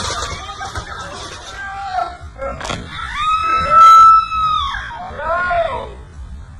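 Excited high-pitched shouts and cries from people. The loudest is a long cry that rises and falls, starting about three seconds in, and shorter cries follow near the end.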